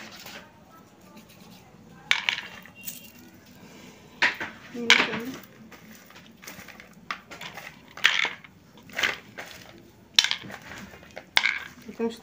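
Roasted peanuts being stirred and picked over by hand in a plastic bowl: the nuts click and rattle against each other and the bowl in short separate bursts, about one every second or two.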